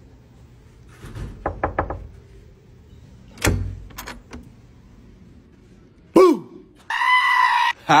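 A quick run of knocks on a wooden door, then a single clunk and a couple of clicks as the door is worked open. Near the end a man gives a short cry and then a loud held yell in a jump scare.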